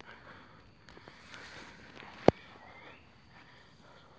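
Footsteps and rustling through leafy undergrowth, faint, with one sharp click a little over two seconds in.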